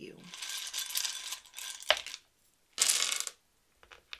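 Wooden letter tiles clattering as they are mixed by hand, with one sharp click about two seconds in and a second short burst of rattling about a second later.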